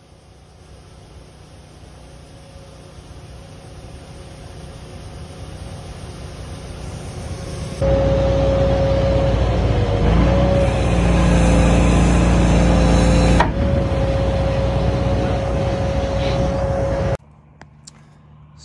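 A vehicle engine running, growing steadily louder for about eight seconds. It then turns suddenly much louder and closer, with a steady whine over the engine noise, and drops off abruptly near the end.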